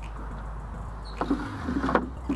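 Wooden pollen-trap drawer being slid in its slot, with a few short scrapes and knocks in the second half, over a steady low rumble.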